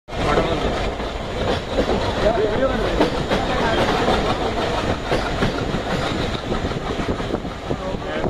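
Train running along the track, heard from on board: a steady rumble with occasional clacks of the wheels over the rails.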